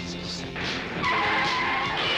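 Tyres skidding with a loud squeal that begins about a second in, over soundtrack music.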